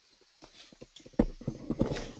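Irregular clicks and knocks, faint at first from about half a second in, then louder and closer together from just over a second in: handling or desk noise picked up on an open microphone.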